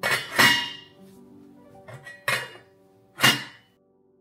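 Glass lid clanking against a stainless steel cooking pot as it is handled: a pair of sharp clanks at the start, another a little past two seconds, and a last one a little past three seconds.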